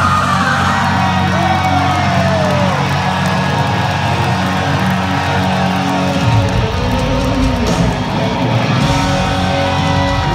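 Live hard rock band playing loud in a stadium, recorded from the stands: electric guitar bending notes over held bass notes in the first few seconds, with the low end growing heavier about six seconds in.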